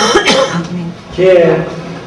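A man clears his throat in one short, harsh burst at the start, then goes on speaking.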